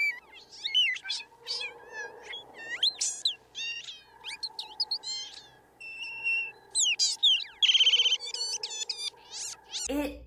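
Film sound effect of a Wistie, a tiny glowing fairy creature, chirping and twittering in quick, high, squeaky glides. A short buzzing trill comes about three-quarters of the way through, over a faint steady hum.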